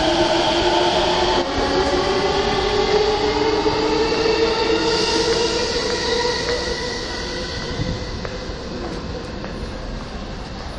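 A Keihin-Tohoku line E233-series electric train pulling out of the station. Its traction motors whine in several tones that rise together in pitch as it accelerates, and the sound eases off in the second half as the train draws away.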